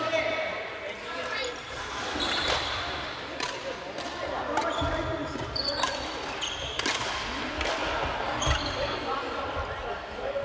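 Badminton rackets striking shuttlecocks in irregular sharp clicks across several courts, mixed with short high squeaks of sneakers on the wooden floor and players' voices, all echoing in a large sports hall.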